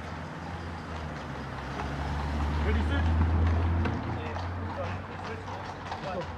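A car driving past close by: a low engine rumble that swells to its loudest about three seconds in and then fades, with faint voices.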